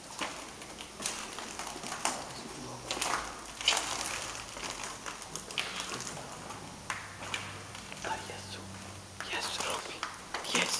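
Footsteps of several people walking through a corridor, short scuffs about once a second, with quiet voices underneath.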